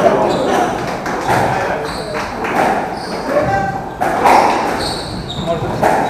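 Squash rally: repeated sharp smacks of the ball off the rackets and walls, with shoes squeaking on the wooden court floor, over the murmur of spectators' voices in the hall.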